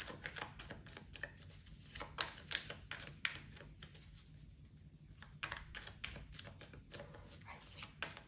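Tarot cards being handled on a table: light clicks, taps and slides of card on card, in clusters with a pause about halfway through.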